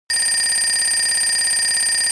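Shrill electronic ringing tone, trilling rapidly at about eighteen pulses a second in the manner of a telephone bell, starting abruptly and holding steady.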